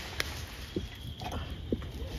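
Steady light rain falling, with one sharp click and a few faint taps over it.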